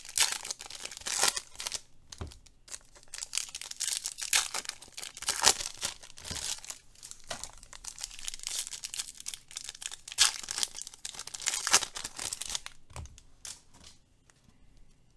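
A baseball card pack's wrapper being torn open and crinkled in the hands, in repeated short rustling bursts that thin out near the end.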